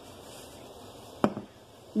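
Water at a rolling boil in a large pot, a steady bubbling hiss, with a single sharp click a little past halfway.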